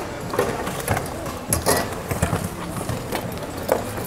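Hands rummaging through a bin of secondhand goods: irregular knocks and clunks as shoes and other items are picked up and moved about.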